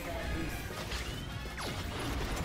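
Tokusatsu transformation sound effects: crashing, impact-like effects over background music, with a falling sweep near the end.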